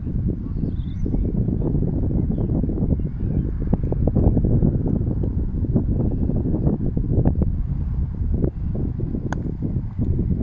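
Wind buffeting the microphone, a steady low rumble. A sharp click a little past nine seconds in.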